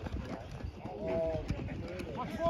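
People shouting and yelling during a live play in a baseball game, with several raised voices about a second in. There is a short sharp click about one and a half seconds in.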